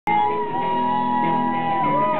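Live rock band with electric guitars ringing out held notes, one note bending in pitch near the end.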